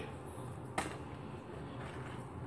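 Hands handling thick home-fried potato chips over a bowl: one short click about a second in, over faint room tone.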